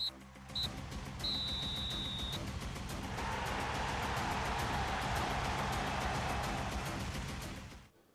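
TV sports-show transition sting: two short high tones and then a longer held one over music with a fast, even beat, swelling into a loud noisy rush from about three seconds in and cutting off abruptly just before the end.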